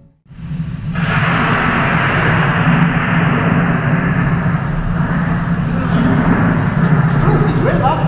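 Stage storm sound effect over the theatre speakers, a steady loud wash of rain and wind with a low rumble, cutting in abruptly just after the start. A single rising sound near the end.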